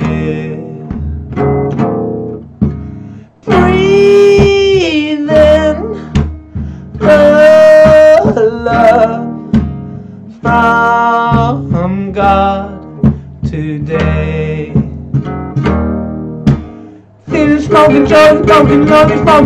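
A man singing while strumming chords on an acoustic guitar, holding long notes between phrases, with brief pauses about three seconds in and near the end.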